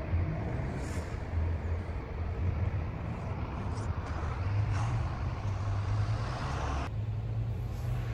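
Street traffic with a coach's engine rumbling close by, growing stronger about halfway through, with a brief hiss at about that point.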